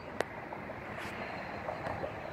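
Steady outdoor background noise, a low hiss of wind and distant traffic, with one sharp click just after the start.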